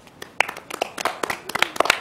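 A small group of people clapping their hands, the claps starting about a quarter of a second in and going on unevenly, not in unison.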